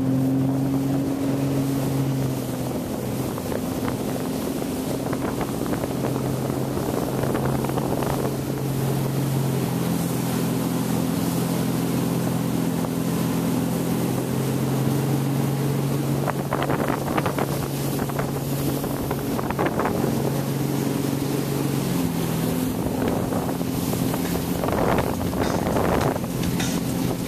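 Tow boat's engine running at a steady towing speed, pulling a wakeboarder, over the rush of wind and water. The engine has just come up to speed from the pull-up and then holds an even pitch.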